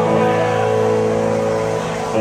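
Live southern rock band playing an instrumental passage: electric guitars and keyboard hold a sustained chord, which dips slightly in loudness near the end.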